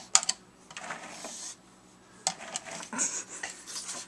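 Large plastic barrel of cheese balls knocking and scraping on carpet as a pug paws and noses into it, the cheese balls rattling inside. Several sharp knocks near the start, a scraping rustle about a second in, then more knocks and clatter after two seconds.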